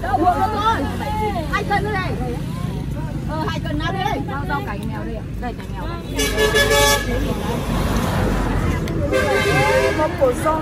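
A road vehicle's horn sounds twice, each a toot of just under a second, about six and nine seconds in. Voices chatter in the background.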